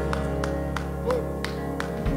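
Keyboard holding a sustained chord over a low bass note, with light, evenly spaced ticks about three times a second. A short sung note rises and falls about a second in.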